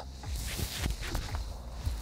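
Quiet outdoor background on a golf course: a steady low rumble with faint, scattered soft rustles and ticks.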